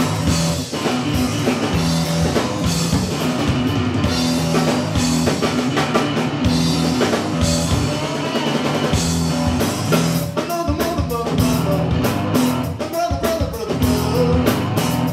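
A live blues-rock duo playing loudly: strummed guitar and drum kit, the drum hits coming thicker in the last few seconds.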